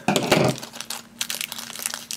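Small foil blind bag crinkling and rustling as fingers work it open, loudest in the first half-second, then lighter crackles.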